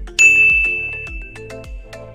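A single bright 'ding' sound effect strikes about a fifth of a second in and rings out for well over a second, over background music with a steady beat.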